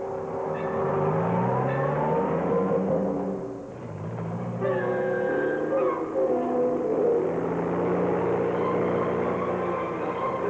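A jeep's engine running and rising in pitch as it accelerates, then, after a break, a light plane's engine droning steadily as it flies low overhead.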